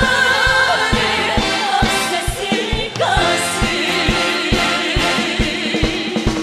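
Korean trot song sung by three women's voices together over a live band, with a steady drum beat of about two hits a second.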